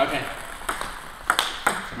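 Table tennis ball in a backhand rally: sharp clicks of the celluloid-type ball off the rubbers and the table, one at the start, then two quick ones about a third of a second apart a little past the middle.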